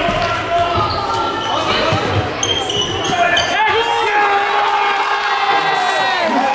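Futsal ball and players' feet thudding on a sports-hall floor under spectators' shouting. About halfway through, many voices break into long, held shouts of cheering that carry on to the end.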